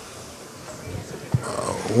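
Quiet hall room tone, broken by a single sharp click a little past one second in, then a faint voice murmuring near the end.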